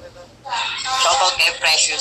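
A person's loud voice, starting about half a second in and carrying on to the end.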